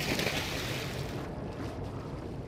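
Ferry sound-effects bed: a sudden wash of water noise that fades over about a second, over the steady low drone of the boat's engine.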